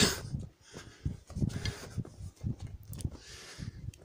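A man breathing hard through his mouth while hiking up a steep mountain path, with two hissing breaths about a second and a half in and near the end. Irregular low thuds of footsteps on the stony ground run underneath.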